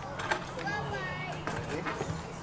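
Indistinct background voices chattering, with a steady low hum underneath.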